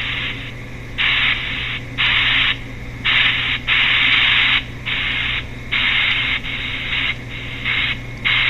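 Pink noise from a phone's ghost-box app (PINK Noise CHOPPED), played through the phone's speaker at a 475 ms chop setting. It comes as loud bursts of hiss that cut in and out every half second to a second, at uneven lengths.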